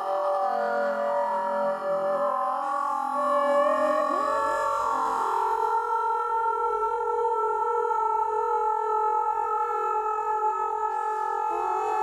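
Electronic drone of layered held tones, sounding together as a sustained chord, with new notes sliding up into it about two, four and five seconds in and again near the end.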